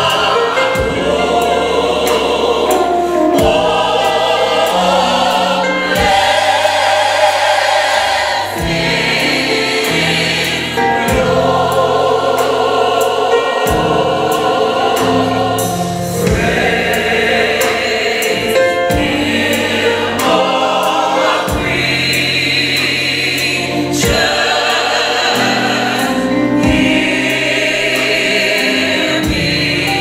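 Gospel mass choir singing in full harmony with a live band of keyboards and drums, sustained chords over a stepping bass line and steady drum and cymbal hits.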